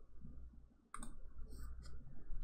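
Computer mouse clicking a few times, the first sharp click about a second in, over a faint low hum.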